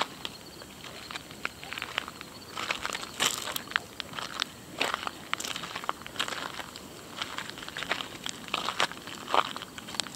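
Footsteps crunching on loose gravel while walking, an irregular run of short crunches.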